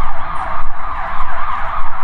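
An emergency-vehicle siren sounding loudly in a fast, repeating up-and-down sweep, several cycles a second.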